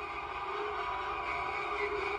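A sustained drone of several steady tones layered together, the suspense sound bed of a horror film soundtrack, holding without change.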